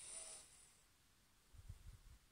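Near silence in a small room: a brief soft hiss of breath near the microphone in the first half-second, then faint low bumps of the phone being handled near the end.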